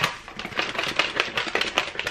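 Plastic shaker bottle being shaken hard to mix a powdered drink: a rapid, even rattle of about five strokes a second, opening with a sharp click.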